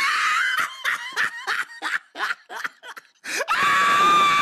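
High-pitched human screaming: a held scream at the start, short broken cries through the middle, then another long, steady scream from about three seconds in.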